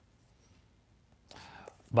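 Near silence for about a second, then a faint breathy sound, a man drawing breath, just before his speech starts at the end.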